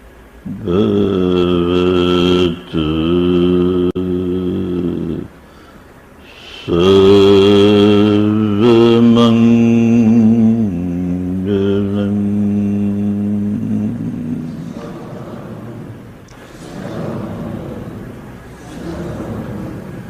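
A deep male voice chanting in long, drawn-out held notes, in four phrases with short breaks: the closing chant of a guided Vipassana meditation session. After the last phrase, about two-thirds of the way in, the sound thins into a soft, fading rumble that swells gently twice near the end.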